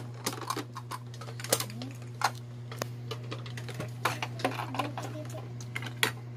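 Irregular clicks and taps of small plastic toy parts being handled and fitted together, over a steady low hum.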